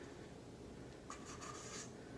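Faint scraping as cake batter is scraped out of a stainless steel mixing bowl into a glass pie plate, starting about a second in.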